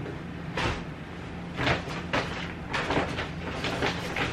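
Plastic bags and clothing rustling in a series of short, irregular scrapes as they are handled, over a steady low hum.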